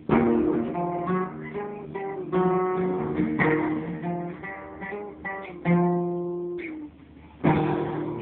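Acoustic guitar playing a run of plucked chords and single notes, breaking off briefly about seven seconds in before a new chord rings out.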